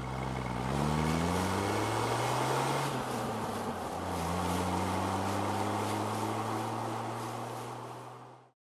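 An SUV's engine accelerating: its pitch climbs for about three seconds, drops suddenly, then climbs slowly again. The sound cuts off abruptly at the end.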